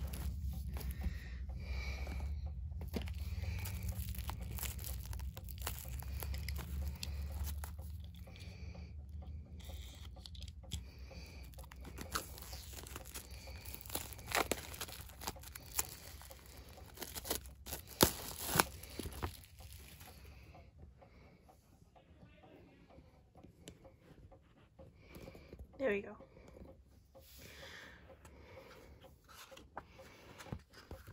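Plastic shrink wrap being torn and crinkled off an album, with a run of crackles and a few sharp snaps, then quieter handling in the last third.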